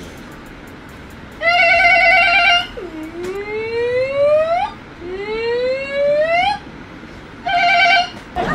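A man imitating vehicle sounds with his voice: a short steady horn-like honk, then two rising siren-like wails of about two seconds each, and another short honk near the end.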